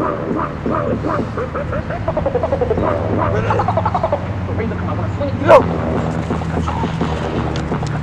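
People's voices calling out and talking indistinctly, over a steady low hum, with one sharp loud sound about five and a half seconds in.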